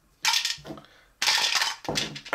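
Small hard plastic Potato Head pieces clattering and rattling inside the toy's hollow plastic body, where they are stored, in two short bursts.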